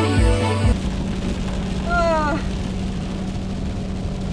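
Background music cuts off abruptly less than a second in, leaving the steady road and engine noise inside a Ford pickup's cab at highway speed, with a low, even hum. A brief voice sound comes about two seconds in.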